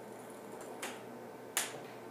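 Ping-pong ball bouncing on a hard floor after running off an inclined wooden ruler: two sharp clicks, the second louder and near the end, the gaps between bounces getting shorter.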